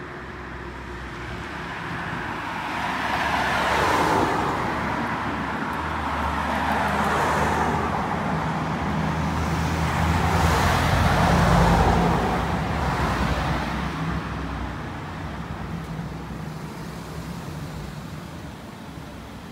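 Cars passing on a nearby street. The traffic noise swells about four seconds in and again, louder, around the two-thirds mark, with the low hum of a vehicle's engine through the middle.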